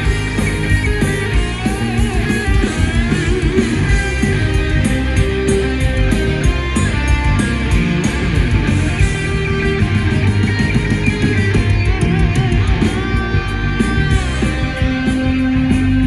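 Power metal band playing an instrumental passage live: electric guitars and bass over a steady, driving drum beat, with a gliding lead melody line and no vocals.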